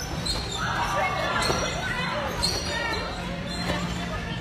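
Background voices of children in a trampoline park, with the thuds of a basketball bouncing and a steady low hum underneath.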